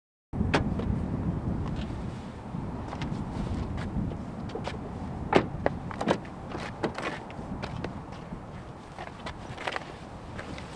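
A Honda Fit's rear passenger door being opened: handle and latch clicks and knocks over a steady low outdoor rumble, the sharpest click about halfway through. The sound begins abruptly just after the start.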